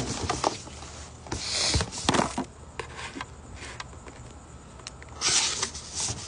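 Close handling noise on a phone: scattered rubbing, clicks and taps. A strong knock comes about two seconds in, and two short hissing bursts come just before it and again about five seconds in.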